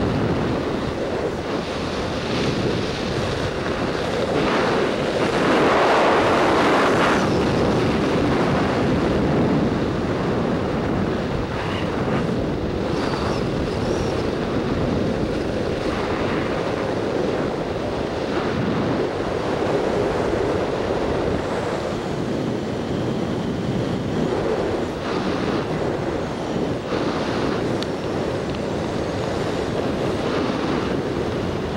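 Strong, steady wind rushing and buffeting over the camera microphone during skydiving freefall. It starts abruptly and swells loudest a few seconds in.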